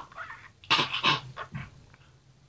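A man's short, strained vocal sounds, several in quick succession in the first second and a half, as he chokes and splutters.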